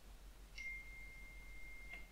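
A faint click, then a single steady high-pitched pure tone held for about a second and a half, cut off by another click near the end.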